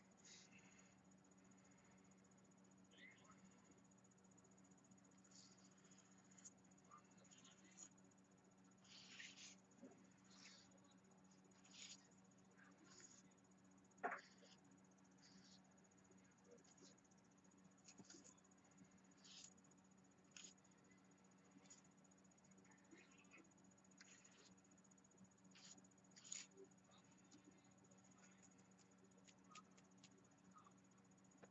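Near silence over a faint steady hum, with soft, brief scratches of a fan brush barely touching a paper journal page, and one sharper tick about fourteen seconds in.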